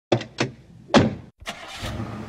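Sound-effect intro: three sharp clunks in the first second, a brief dropout, then a low mechanical rumble with hiss that builds toward the end.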